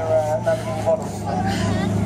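Lamborghini Huracán V10 engine running low and steady as the car crawls forward at walking pace, its low note dropping slightly about the start, with voices over it.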